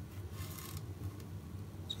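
Faint rustle of fingers handling and turning a small plastic scale-model part, strongest briefly about half a second in, over quiet room tone.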